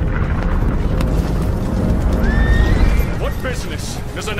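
A troop of horses galloping, a heavy low rumble of many hooves under film music, with a horse whinnying about two seconds in. A man starts speaking near the end.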